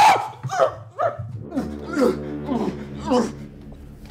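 A man's yelps and cries as a cloth bag is pulled over his head: a loud shout at the start, then a run of short cries, each falling in pitch, about twice a second.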